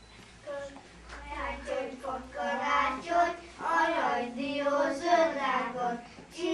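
Young children singing a song together, starting about half a second in after a short hush.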